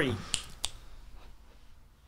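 Two short, sharp clicks about a third of a second apart, just after a spoken word ends, followed by quiet room tone that fades almost to silence.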